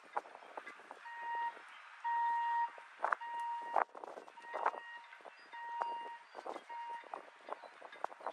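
Footsteps on wooden dock planks, with an electronic alarm beeping a steady tone in half-second beeps about once a second from about a second in until near the end.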